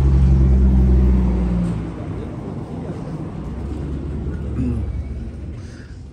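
A motor vehicle's engine idling with a steady low hum, which drops away about two seconds in and leaves a fainter low rumble.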